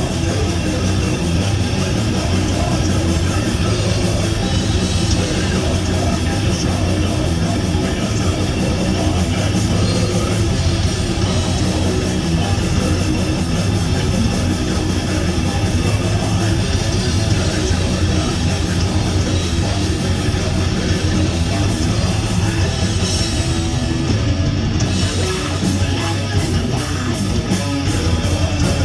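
Heavy metal band playing live at full volume: distorted electric guitars, bass guitar and drum kit in a fast song, loud and unbroken.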